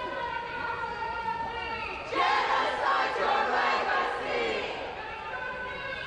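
A group of protesters chanting and shouting together, many voices at once, growing louder about two seconds in.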